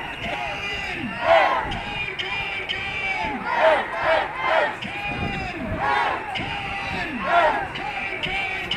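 Crowd of protest marchers shouting and calling out, several voices at once, with louder shouts rising above the crowd noise every second or two.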